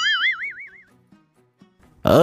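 A cartoon 'boing' comedy sound effect: a single wobbling, quavering tone that fades out within about a second.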